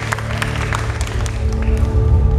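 Scattered audience applause dying away as a keyboard starts a song's intro with low, sustained held notes.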